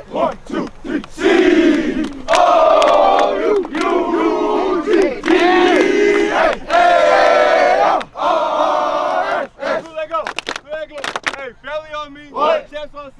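A football team huddled together shouting a chant in unison: several long, drawn-out group yells, then shorter, scattered shouts over the last few seconds.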